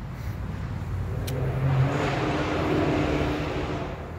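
A motor vehicle passing by: a low engine rumble with road noise that builds to its loudest two to three seconds in and then fades. A single faint click sounds about a second in.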